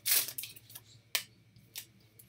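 Foil wrapper of a baseball card pack crinkling as it is torn open, a short crackle at the start, followed by a sharp click a little over a second in and a fainter one near the end.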